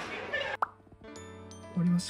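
A short 'plop' pop sound effect about half a second in, followed by soft music with sustained notes. A brief spoken syllable comes near the end.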